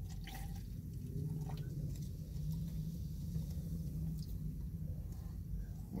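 Steady low hum in a car cabin, with a few faint clicks and small liquid sounds as soda is sipped from a plastic cup.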